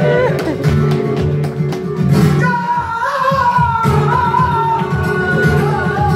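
Live flamenco: a male cantaor sings a long, wavering melismatic line over flamenco guitar accompaniment, the guitar's strokes steady throughout.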